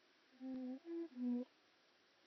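A person humming three short, steady notes with the mouth closed, low, higher, then low again.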